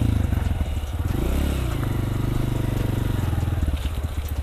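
Honda CRF125 dirt bike's small four-stroke single-cylinder engine ridden at low speed, with a brief rev that rises and falls about a second in, then running steadily and easing off near the end.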